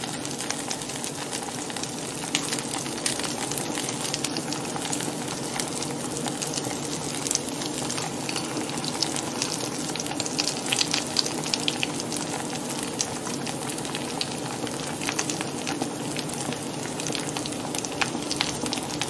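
Tortilla pizza crust frying in butter in a hot stainless steel frying pan: a steady sizzle with a scatter of small crackles.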